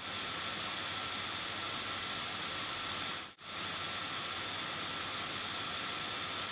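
Steady hiss of electronic microphone noise with a faint high whine, cutting out for a moment just past halfway.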